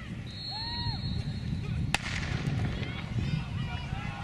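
Outdoor track-meet background: a steady low rumble with faint distant voices, and one sharp crack about two seconds in.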